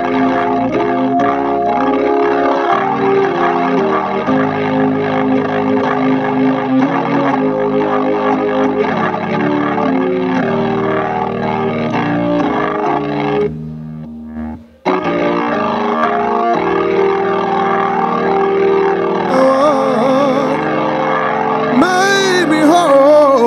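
Organ playing held chords as an instrumental passage of a gospel hymn. It falls away briefly about fourteen seconds in, then resumes, and a voice begins singing near the end.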